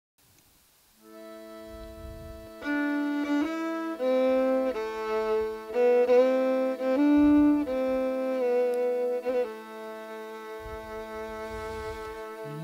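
Fiddle playing a slow melody of long held notes over a steady drone that comes in about a second in. The melody stops near the end, leaving the drone sounding.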